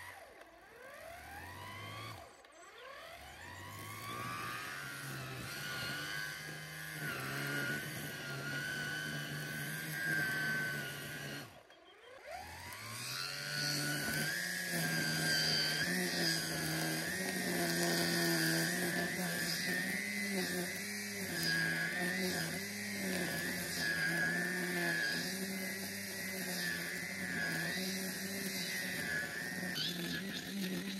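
Battery-powered grass trimmer spinning up with a rising whine, then running with a wavering pitch as it cuts through long grass. It stops briefly about twelve seconds in and spins up again.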